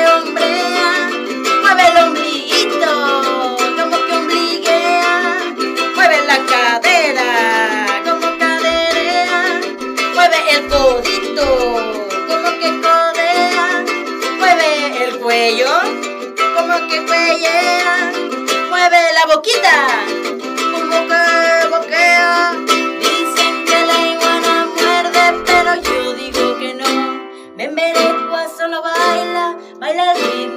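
A woman singing a children's song to her own strummed ukulele, her voice swooping up and down in several long slides.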